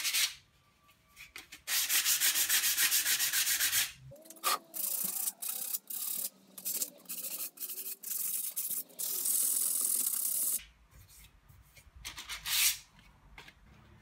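Rough rubbing and scraping on the cast-iron parts of a jointer, in several separate bursts with quiet gaps between. The first burst is a fast run of short strokes.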